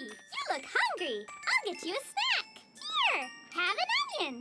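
A cartoon girl's high, squeaky voice in a wordless sing-song, a string of notes that each rise and fall, about two a second, over a tinkling, jingly music cue.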